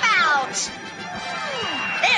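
Cartoon sound effects for a fall: a cat's yowl dropping in pitch, then a long falling whistle sliding downward.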